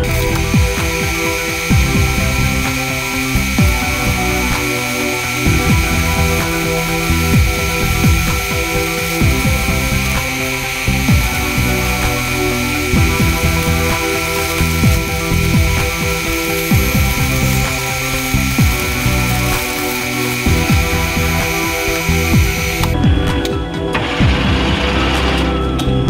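Metal lathe parting off a hollow metal workpiece under coolant. A steady high whine from the cut runs until about 23 seconds in, then stops as the lathe is halted. Background music plays throughout.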